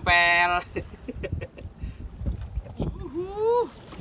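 A man's short exclamation, then a quieter stretch of sea water moving against a small wooden boat with a few faint knocks, and a voice rising in pitch about three seconds in.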